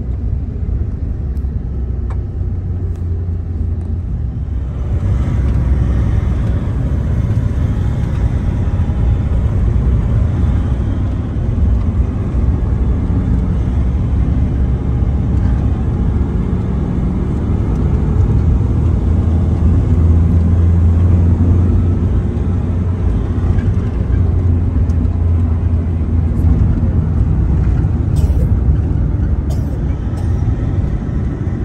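Steady road and engine noise inside a moving van's cabin, a low rumble that grows louder and hissier about five seconds in.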